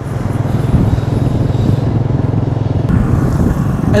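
Vehicle engine running steadily as it travels along a road, with road and wind noise over it.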